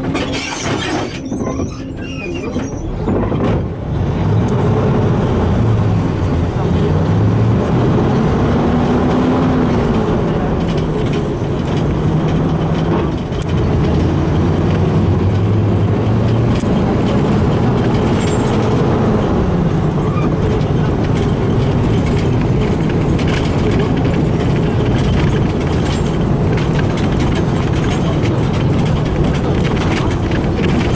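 A LAZ-695N bus's engine heard from inside the cabin as the bus pulls away, getting louder about three seconds in. It then accelerates on the move, its pitch rising and dropping back at each gear change.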